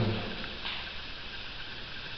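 Low, steady background hiss of room tone in a pause between words, with no distinct sound event.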